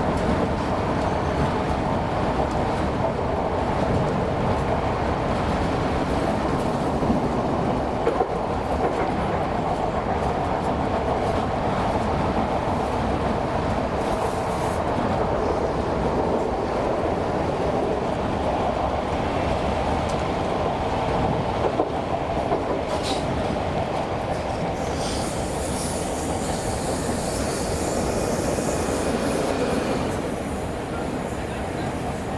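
A Class 317 electric multiple unit heard from inside the carriage, running with a steady rumble of wheels on rail. About 25 seconds in, a high-pitched squeal joins as the train slows into a station.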